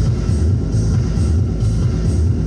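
Loud music with a steady, pulsing bass beat.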